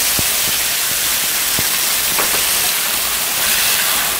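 Marinated duck pieces sizzling in hot oil in a steel wok, a loud steady hiss, with a few light taps of the stirring utensil against the pan.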